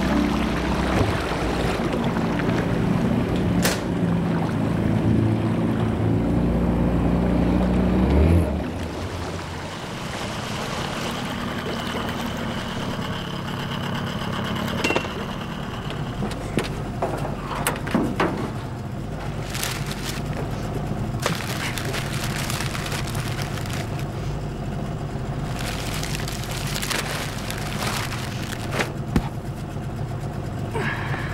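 Low sustained film-score music that stops abruptly about eight seconds in, followed by a vehicle engine running steadily with scattered clicks and knocks over it.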